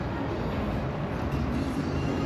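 Steady outdoor background rumble, an even noise heaviest in the low end with no distinct events.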